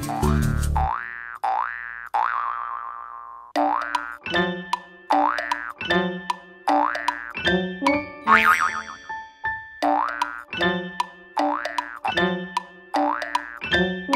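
Cartoon 'boing' spring sound effects, short rising pitch glides repeated roughly once a second, standing for a kangaroo's hops. The first few sound alone, then a bouncy children's-song backing comes in about three and a half seconds in and the boings fall in time with its beat.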